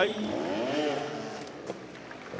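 Trials motorcycle engine revving up and dropping back as the bike climbs an obstacle, fading toward the end.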